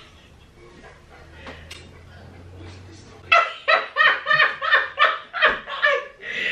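A woman laughing hard in a rapid run of bursts, starting about halfway in after a quiet stretch with a low hum.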